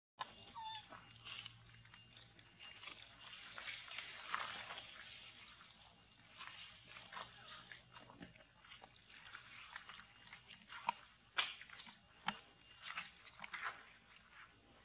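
Irregular crackling and clicking, like dry leaves and twigs crunching, scattered through the whole stretch. A short wavering squeak sounds about half a second in.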